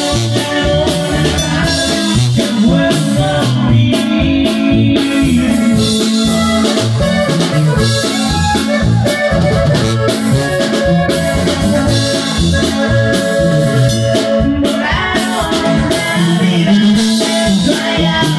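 Live norteño band playing dance music: a steady drum beat, a bouncing bass line and sustained accordion-style melody lines.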